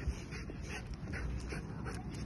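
Golden retriever puppy jumping and scrabbling on its leash, heard as a string of faint, irregular short scuffs and breaths.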